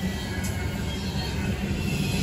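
Double-stack intermodal well cars of a freight train rolling past: a steady rumble of steel wheels on the rails.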